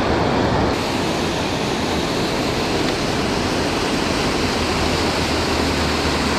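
Water pouring over a low dam spillway and rushing through the river below, a steady roar of noise that grows sharper and brighter less than a second in.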